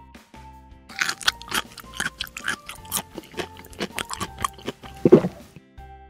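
Eating sound effect: a quick run of crunching, munching bites over soft background music, with a brief vocal sound about five seconds in.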